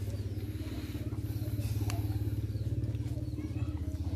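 A small engine running steadily nearby, a low pulsing hum, with faint high chirps over it and a single sharp click about two seconds in.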